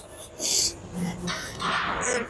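A man breathing hard as he strains through a set of seated cable rows, with a couple of short, forceful breaths.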